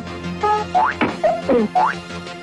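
Cartoon sound effects: a rapid string of short whistle-like tones sliding up and down in pitch, about five in two seconds, over background music, marking drumsticks being snatched from a bowl until it is empty.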